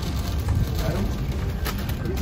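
Steady low street rumble beside a food truck, with a paper bag crinkling briefly near the end.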